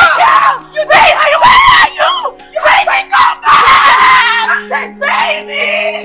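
Women screaming and yelling in a physical fight, in about five loud, high outbursts.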